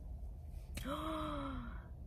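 A woman's voiced sigh, sudden at the start, about a second long and falling in pitch, breathy.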